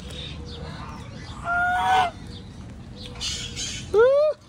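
A goose honks once, a single call of about half a second about one and a half seconds in, and a second honk begins right at the end.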